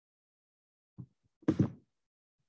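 Two short thumps in otherwise dead silence: a faint one about a second in and a louder, sharper one half a second later.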